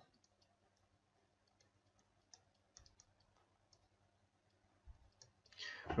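Faint, scattered clicks and taps of a stylus writing on a digital tablet, over a faint steady low hum and near silence.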